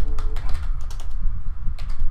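Computer keyboard typing: a few keystroke clicks as a word is typed, with a quick pair of keystrokes near the end.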